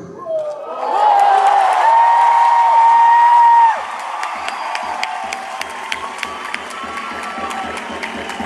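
Audience cheering and whooping. A loud high held note runs until it cuts off sharply nearly four seconds in. Cheering goes on after it, with scattered claps and a low beat that speeds up.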